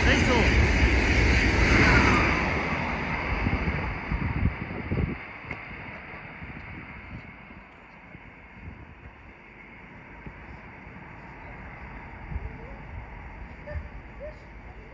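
A TGV inOui high-speed train passing through the station at speed. The loud rush of wheels and air eases over the first few seconds and drops off sharply about five seconds in, leaving a quiet outdoor background.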